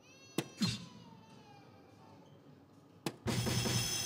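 Soft-tip darts striking a DARTSLIVE electronic dartboard: sharp clicks, with the board's gliding electronic hit sounds after them. A louder stretch of the board's sound effects and music starts about three seconds in.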